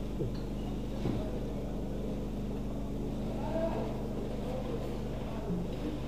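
Steady low hum with faint voices murmuring in the background.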